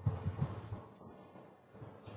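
Faint, low handling noise: a soft thump at the start, then low rumbles trailing off, as a hand presses on the lid of a mixer-grinder jar whose motor is not running.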